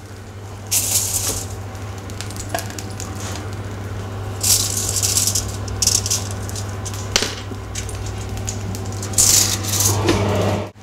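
Salmon fillets searing in a hot frying pan: a steady sizzle that swells into louder bursts of hissing three times, about a second in, midway, and near the end, over a steady low hum.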